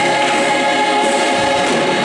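Gospel choir singing, the massed voices holding a chord.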